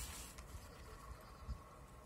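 Quiet pause: faint low background hum with light handling noise and one soft thump about a second and a half in.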